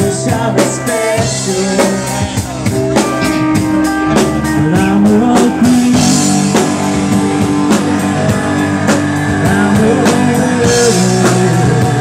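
Live alternative rock band playing: drum kit keeping a steady beat under electric guitars and bass, with one note bending upward about four seconds in.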